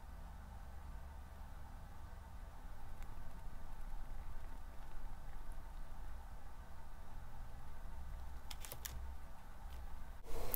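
Quiet room tone with a low steady hum, and a few faint clicks near the end.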